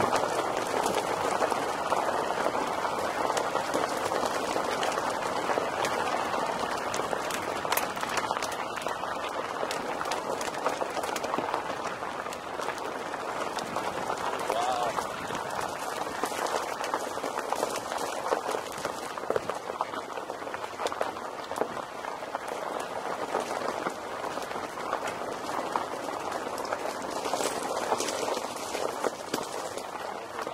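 Car tyres rolling over a loose gravel road: a steady crunch with many small stones clicking and popping under the tread.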